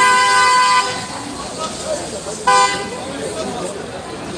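Car horn honking twice: a blast of nearly a second, then a short toot about two and a half seconds in.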